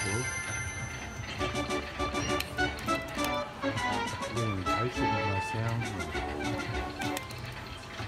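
Aristocrat 5 Dragons slot machine playing its win music, a run of short chiming notes and clinks, while a free-game win counts up on the credit meter.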